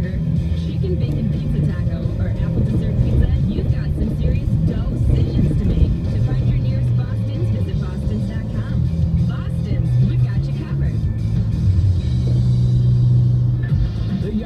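Car radio playing voices and music inside a moving car's cabin, over a steady low drone of engine and road noise.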